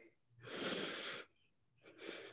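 A woman breathing deeply and audibly to steady herself while emotional and close to tears: one long breath about half a second in, and another beginning near the end.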